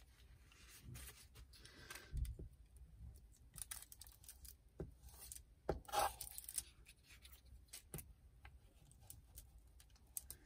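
Glue stick rubbed over paper, faint scratchy strokes with scattered small clicks from handling the stick and the sheet.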